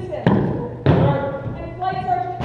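Two heavy boot stamps on a wooden gym floor, about half a second apart, as drill-marching cadets halt, followed near the end by a long drawn-out shouted drill command.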